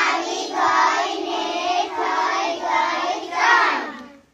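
A group of young children singing a Gujarati counting rhyme together, many voices blended, stopping just before the end.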